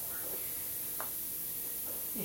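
Steady low background hiss with faint murmured voices and one short, sharp click about a second in.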